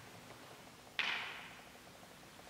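A hardcover book set down on the wooden altar table: one sharp slap about a second in, dying away over half a second in the room's echo.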